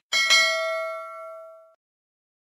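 Notification-bell 'ding' sound effect for a subscribe animation: a bright bell tone struck twice in quick succession, ringing and fading out within about a second and a half.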